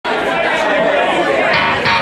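Live rock band with electric guitars playing in a club, with crowd chatter mixed in.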